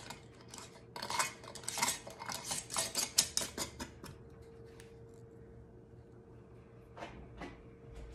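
Metal screw band being twisted finger-tight onto a glass pint canning jar: a run of quick scraping clicks of metal on glass for the first few seconds, then a couple of soft knocks near the end.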